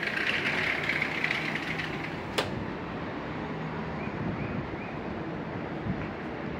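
Steady city traffic noise from the streets below, heard on an open high-rise balcony. A single sharp click comes about two and a half seconds in.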